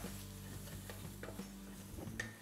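Wooden spatula stirring and scraping a thick spice masala around a pot, with a faint sizzle as the spice powders fry.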